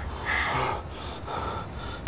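A woman's breathy gasp about half a second in, followed by softer breathing, with no words.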